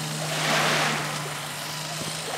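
Shallow water washing over sand, the wash swelling about half a second in and fading, over a steady low hum.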